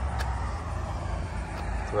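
Steady low outdoor background rumble, with one faint click about a quarter second in.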